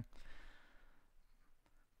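A faint breath or sigh exhaled by a person into the microphone, fading out within about a second, followed by near silence.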